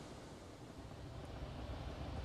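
Faint, steady rushing noise with a low rumble underneath, growing slightly louder toward the end.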